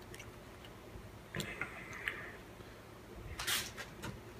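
Faint handling noises of small carburettor parts on a workbench: a soft click about one and a half seconds in with a brief scrape after it, and a short rustle near the end.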